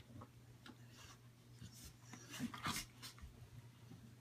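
A puppy and a larger dog play-wrestling: faint scuffling and small dog sounds, with a few short, slightly louder ones about two and a half to three seconds in.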